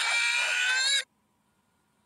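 A cartoon character's high-pitched, wavering voice, without words, cut off suddenly about a second in, followed by near silence.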